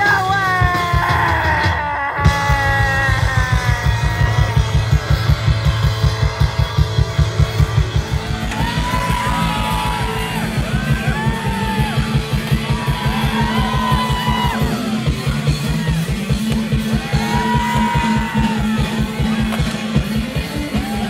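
Live punk rock band playing loud: a fast, steady drum and bass beat with electric guitar. The singer's voice falls in pitch at first, the band breaks off briefly about two seconds in, and from about eight seconds in the vocals are yelled phrases over the driving beat.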